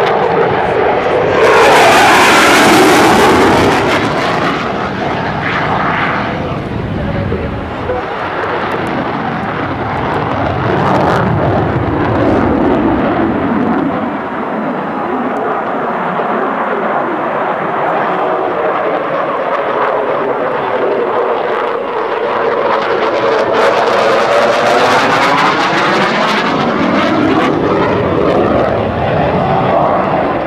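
F-16 Fighting Falcon jet engine noise as the jet passes overhead, loudest about two seconds in and then fading. Near the end the jet noise swells again with a sweeping, wavering sound that rises and falls in pitch as another pass comes by.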